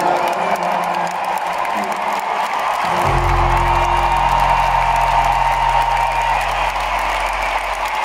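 Concert crowd cheering and applauding at the end of a live rock song. About three seconds in, a low held note from the band's sound system comes in under the crowd and fades out near the end.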